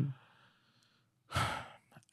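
A man sighs once: a short, breathy exhale about a second and a half in. It follows the tail of a murmured 'mm' at the start and a pause of near silence.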